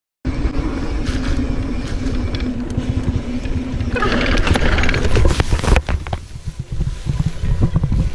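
Mountain bike rolling over a rough dirt trail, heard through the rider's camera as rumble, rattle and wind buffeting the microphone. Near the end comes a run of irregular knocks and clatter as the bike goes down into the grass.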